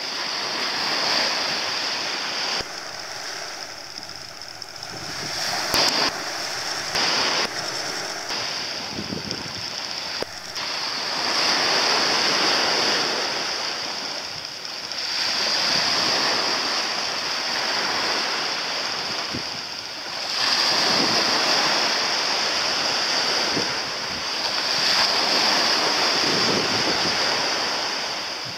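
Small waves washing onto a sandy beach, the wash swelling and fading every four to five seconds, over a steady high hiss. A few short knocks come around six to seven seconds in.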